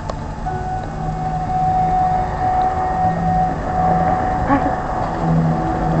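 A steady tone held for several seconds, starting about half a second in, with a lower hum that comes and goes beneath it.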